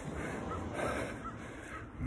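Faint bird calls outdoors, three short calls in quick succession, over low background noise.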